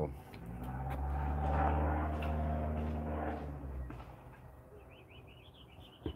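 A motor vehicle's engine hum passes by: low and steady in pitch, it swells and fades away over about four seconds. Near the end a bird gives a short burst of quick high chirps.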